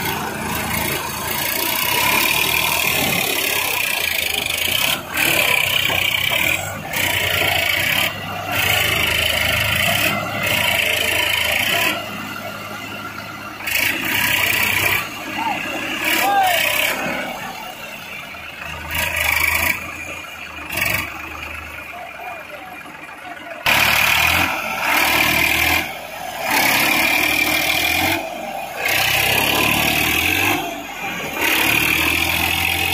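Tractor three-cylinder diesel engines working hard under load as a Massey Ferguson 7250 DI tows a Swaraj 744 and its rotavator, bogged in wet mud. The engine sound comes in repeated surges, with a quieter stretch in the middle.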